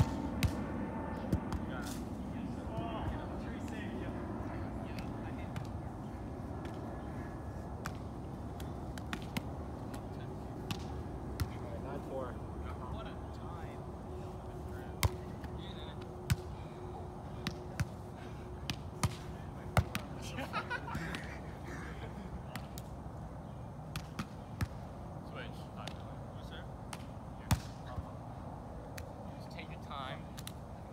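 Volleyball being played on sand: sharp slaps of the ball off players' hands and arms, one at a time and scattered unevenly as rallies go on, over a steady outdoor background hiss.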